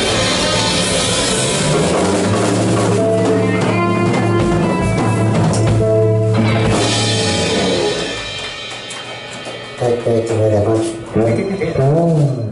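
Live rock band playing: electric guitars, electric bass and drum kit. The full band stops about seven seconds in, and a few short, separate sounds follow near the end.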